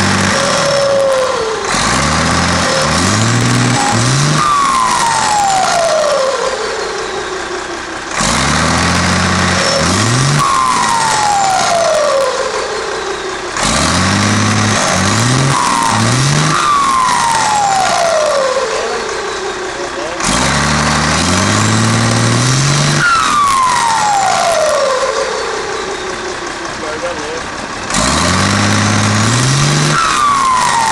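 Turbocharged Mercedes-Benz 1113 truck's six-cylinder diesel engine revved in repeated blips, about every six seconds. After each rev the turbocharger whistles, the whistle falling steadily in pitch over a few seconds as the turbo spools down.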